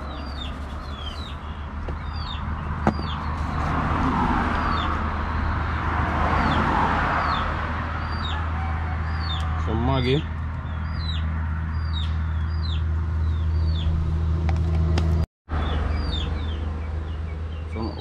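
Small birds chirping over and over, a short falling note repeated roughly every half second, over a steady low hum. About ten seconds in there is one brief wavering call.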